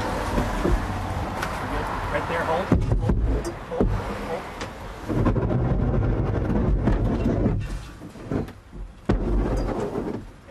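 Hot air balloon basket coming in for a rough landing: wind rumbling on the microphone, with heavy thumps as the basket bumps down, the loudest about three seconds in and again near the end.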